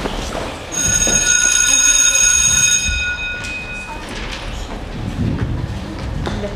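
School bell sound effect played over the theatre's speakers: a steady ring of many high tones that starts abruptly about a second in and lasts about three seconds before fading. Faint knocks follow as chairs are moved about on stage.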